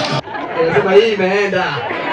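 A man talking into a microphone, with a crowd chattering around him.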